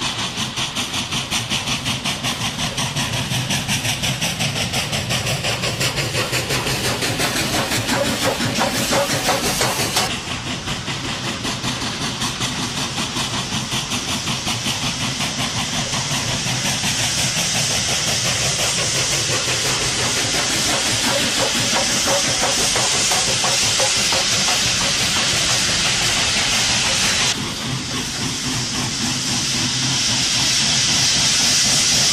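Steam locomotive working with rapid, even exhaust beats and a steady steam hiss that grows louder later on. The sound changes abruptly twice, about a third of the way in and near the end, as one shot gives way to the next.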